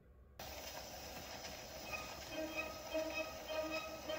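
Shellac 78 rpm record surface noise through an acoustic phonograph's gooseneck tone arm and reproducer: a steady hiss and crackle that starts abruptly about half a second in as the needle sets into the groove. From about two seconds in, the orchestra's introduction to the aria starts faintly in short repeated notes.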